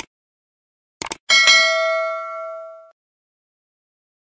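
Subscribe-animation sound effects: a single mouse click, then a quick double click about a second in. A bright notification-bell ding follows and rings out for about a second and a half.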